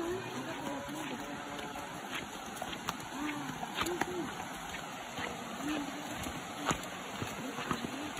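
Faint voices of people walking, over a steady hiss of flowing river water, with a few sharp clicks.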